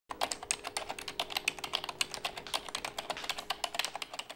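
Fast typing on a computer keyboard: a quick, uneven run of key clicks that goes on without pause.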